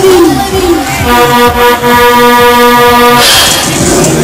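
A fairground ride's horn sounds one steady blast of about two seconds over the ride's pulsing music beat, after a rising-and-falling siren effect dies away. A short burst of hiss follows the horn.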